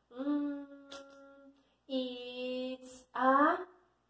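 A woman humming without words: two long, level held notes, then a short rising hum near the end, the drawn-out sound of someone waiting for an answer.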